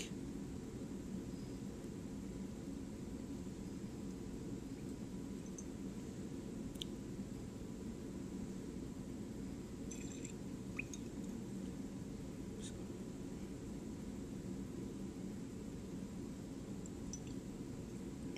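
Quiet room tone with the faint swishing of liquid swirled round in a glass Erlenmeyer flask during titration, and a few faint, short clicks of glass.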